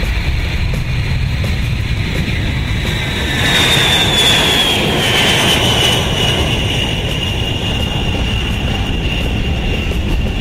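B-52 Stratofortress's eight jet engines at takeoff power as the bomber rolls, lifts off and passes. A steady heavy roar carries a high whine that swells about four seconds in and then slides slowly down in pitch as the aircraft moves away.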